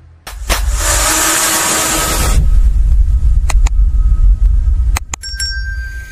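Edited intro sound effects: a loud rushing whoosh lasting about two seconds over a deep rumble that runs on until near the end. Then a few sharp clicks and a short chime as the subscribe animation plays.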